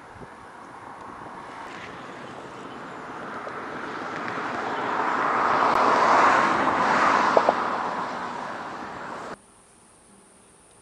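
A passing vehicle: its noise swells slowly to a peak about six or seven seconds in, fades, and cuts off suddenly near the end.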